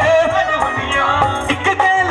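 Live band playing a song, a male singer's melody carried over drum kit, keyboards and hand percussion, amplified through the stage speakers.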